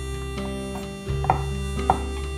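Chef's knife slicing shiitake mushroom on a bamboo cutting board: two sharp knife strikes on the board in the second half, a little over half a second apart. Background music plays underneath.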